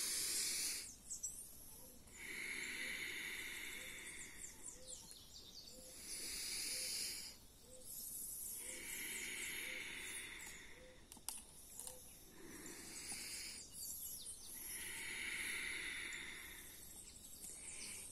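A woman taking three slow, deep conscious breaths: long, audible inhales and exhales of one to three seconds each, with short pauses between them.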